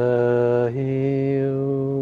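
A man's voice chanting a long held vowel on one note, then dropping to a lower held note about two-thirds of a second in.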